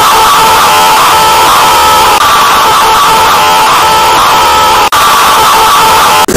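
Deliberately overloaded, distorted scream sound effect, clipped at full volume, with a warbling tone that repeats a little faster than once a second. It cuts out for an instant near five seconds.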